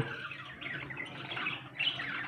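Caged budgerigars chirping and chattering: a run of quick chirps, with a louder one near the end.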